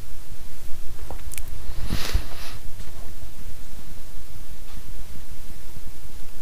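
Steady background noise of a home voice recording, a low hum with faint hiss. A short rustle comes about two seconds in.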